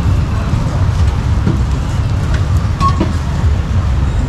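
Steady low rumble of street traffic, with motorbike engines close by.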